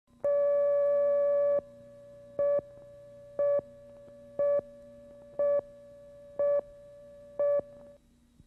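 Videotape countdown leader tones: one long steady beep, then six short beeps one second apart, one for each number counted down on the slate. A faint low hum runs beneath the beeps.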